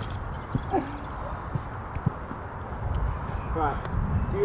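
Outdoor background rumble with a few light knocks spread through it, and a brief voice near the end.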